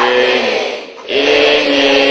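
Voices chanting a Buddhist recitation in unison, in drawn-out held notes that drop in pitch at the end of each phrase, with a short break about a second in.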